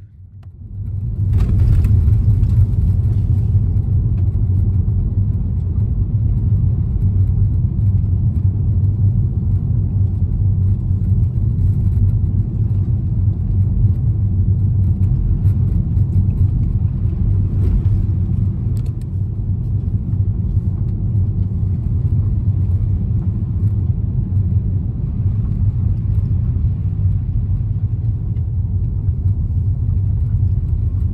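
Steady low rumble of a car driving, heard inside the cabin: engine and tyre noise on the road. It swells up about a second in and then holds steady.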